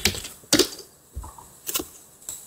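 Computer keyboard keystrokes: about three separate clicks, the sharpest about half a second in and near the end, as a terminal command is typed and entered.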